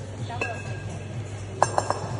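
Two 14 kg kettlebells clinking against each other as they drop from overhead lockout into the backswing of a long cycle. A faint ring comes first, then three quick, sharp metallic clinks near the end.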